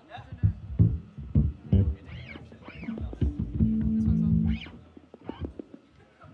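A live band noodling between songs: scattered, loose bass guitar and drum hits, then a held bass note for about a second, with a few short high gliding sounds over it. It dies down near the end.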